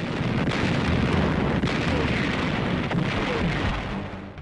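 Heavy naval gunfire and shell explosions of a shore bombardment, heard as a dense, continuous barrage at an even level with no single shot standing out.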